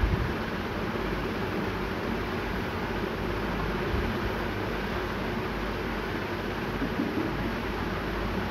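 Steady bubbling hiss of a pot of spiced biryani water coming to the boil on a stove, unchanging throughout.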